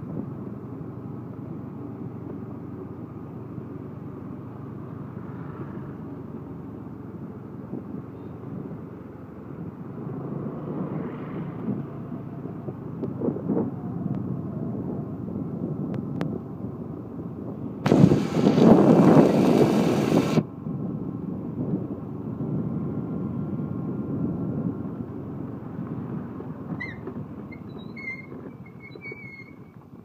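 Steady low running noise of a vehicle travelling along a road. About two-thirds of the way through, a loud rushing noise lasts about two seconds, and a few brief high chirps come near the end.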